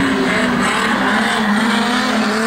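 Banger race car engines running at speed on the track, one steady engine note holding over a bed of track noise.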